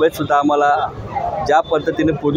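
A man speaking, with short breaks between phrases.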